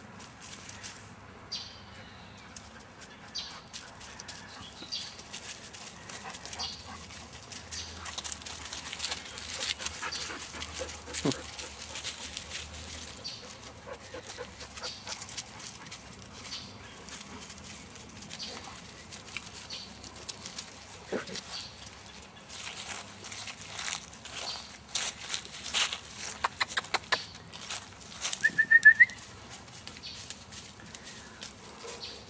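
Several dogs moving about on grass and dry leaves: scattered rustles and small clicks that grow busier and louder near the end.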